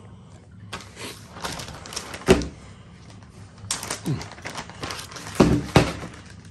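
Plastic accessory bag being opened and rustled, with small hardware parts being handled on a plastic folding table; sharp knocks about two seconds in and twice near the end, as parts or the bag hit the tabletop.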